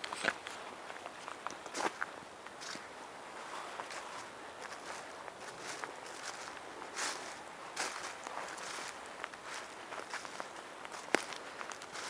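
A person's footsteps, walking at an uneven pace with scattered, irregular steps.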